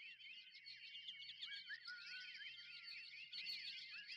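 Faint, continuous high-pitched chirping and twittering: many quick overlapping rising and falling chirps, with a faint low hum beneath.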